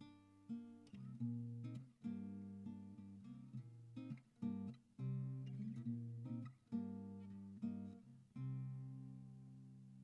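Capoed Tanglewood TSF-CE Evolution acoustic guitar playing the closing bars of a solo instrumental: a melodic run of plucked notes and chords. From a little past eight seconds a final chord is left to ring and fades away.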